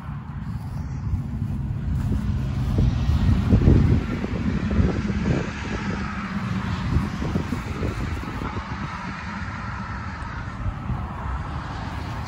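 Low rumble of a vehicle passing on a road, swelling to its loudest about four seconds in and slowly fading, with wind buffeting the microphone.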